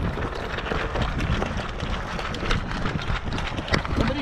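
Footsteps of players running on dirt, with gear rattling: a dense, irregular run of thuds and clicks.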